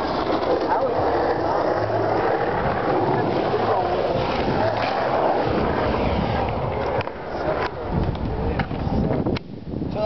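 Skateboard wheels rolling over a concrete skatepark bowl in a steady rumble, with people's voices chattering underneath. Several sharp clacks come in the last few seconds.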